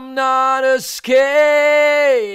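A soloed, unprocessed lead vocal comped from several takes and sung a cappella: two long held notes with a quick breath drawn between them just before the middle. It is a raw take recorded through a budget Behringer C3 condenser microphone.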